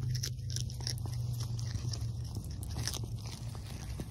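A cat chewing something crunchy close to the microphone: a run of irregular crunches and crackles over a steady low hum.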